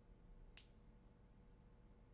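Near silence: room tone with a low steady hum, broken by one short, faint click about half a second in.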